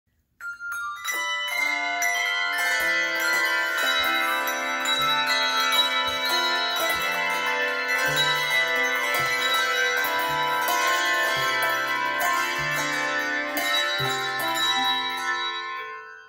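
A handbell choir ringing a tune on brass handbells. Many bells ring on and overlap, over low bass notes struck about once a second. The ringing starts about half a second in.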